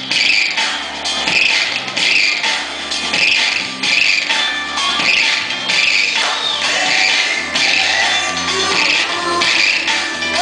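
Dance music with a steady beat.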